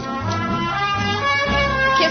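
Studio band playing a snippet of a popular song, a tune for a quiz contestant to name, over a steady bass beat.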